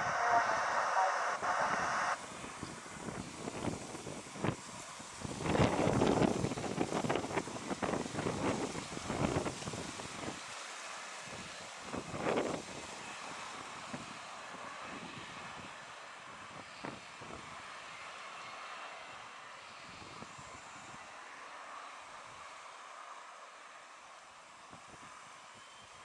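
Jet airliner on final approach, its engines a steady distant rush that fades slowly. Gusts of wind buffet the microphone between about five and ten seconds in, and once more a little later.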